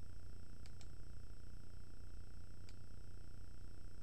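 Steady low electrical hum with faint steady high whines from the recording setup. Under a second in comes a quick double click of a computer mouse, and a single click follows a couple of seconds later.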